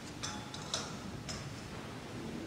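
A few light, high-pitched clicks or clinks, irregularly spaced, about four in two seconds, over a steady low background hum.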